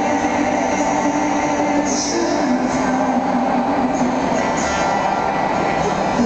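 Live concert music heard from the audience: a man sings long, drawn-out notes over acoustic guitar accompaniment, with a dense wash of room sound underneath.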